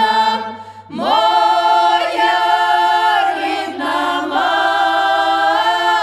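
Ukrainian village women's ensemble singing a traditional folk song a cappella in several voices. A short breath break just under a second in, then a new phrase scoops up into long held chords.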